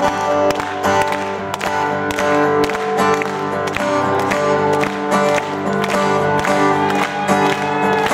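Two acoustic guitars strumming an instrumental passage of a song, with a steady, even rhythm of strokes.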